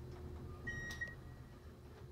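A single high electronic beep, about half a second long, from the elevator's car-call button as the basement call is registered and its button lights. A low steady hum runs underneath.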